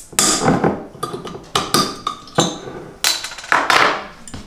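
Bottle opener prying the metal crown cap off a glass bottle of hard cider, with the bottle handled after: a run of sharp clicks and knocks spread over a few seconds.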